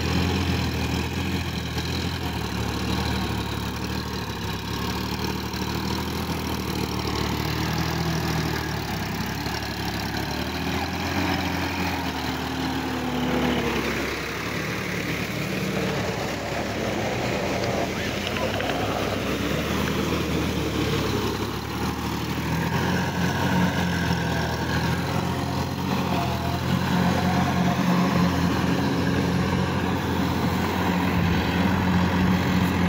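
Sonalika tractor's diesel engine running steadily under load as it churns through deep, flooded paddy mud, its pitch rising and falling a little as it works.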